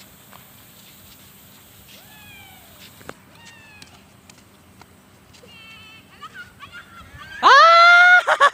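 Faint open-air background with a few distant high calls that slide downward, then, near the end, a loud, drawn-out high-pitched shout that rises and holds, from a child cheering the kite.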